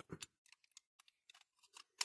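Faint, scattered small clicks and ticks of a diecast toy car being worked apart by hand, as a door is twisted out of the Dinky Toys Range Rover's body against its plastic interior.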